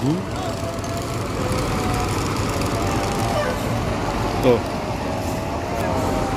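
Intercity diesel bus engine running as the bus pulls in, over the steady noise of a crowded terminal. A short spoken word comes about four and a half seconds in.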